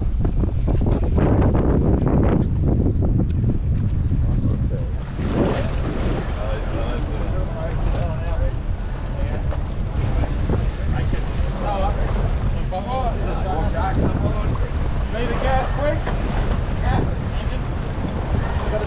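Wind buffeting the microphone aboard a boat at sea, over a steady wash of water along the hull, with faint voices in the background.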